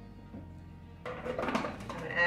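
Faint background music, then from about a second in a run of knocks and clatter as the food processor's plastic cover is fitted back onto the bowl.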